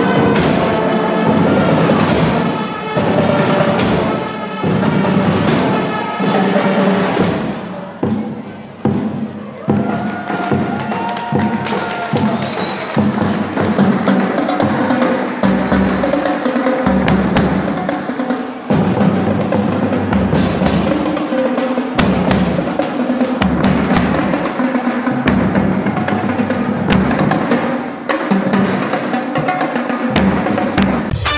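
School marching band playing live: brass over marching percussion, with bass drums, snare drums and cymbals. The level dips briefly about a third of the way in, and heavy bass drum strokes carry the second half.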